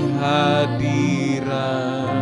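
Slow, soft worship song: several voices singing held, wavering notes over sustained keyboard chords.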